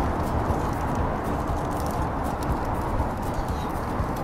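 Steady, low rumbling outdoor background noise with no speech, at a moderate level.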